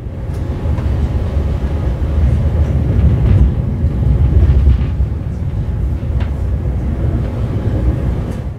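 Passenger train running on rails, heard from inside the carriage: a steady low rumble with a few faint clicks.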